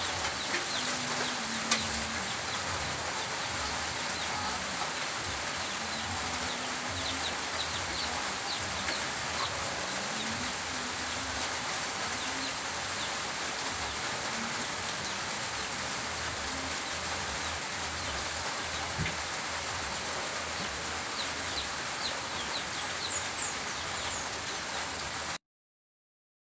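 Catfish pieces frying in hot oil in a wok: a steady sizzle with many small crackles and pops.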